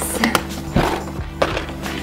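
Hard plastic storage boxes knocking and rattling as they are handled in a clear plastic bin: several sharp knocks, over background music.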